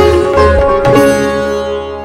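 Sitar and tabla playing together, with quick plucked sitar notes over deep tabla strokes. About a second in, the strokes stop and the sitar's strings ring on, slowly fading.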